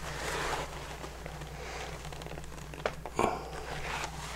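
Hands rustling and handling pieces of bark-tanned deer hide, with a small click and then a louder scuff about three seconds in, over a steady low hum.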